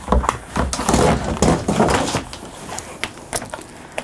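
Pleated folding privacy curtain being slid along its track, a rustling clatter of quick clicks and rattles for about two and a half seconds that then dies down.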